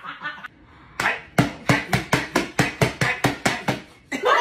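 Hands slapping rapidly on a kitchen countertop: a steady run of sharp knocks, about four or five a second, starting about a second in after a short lull.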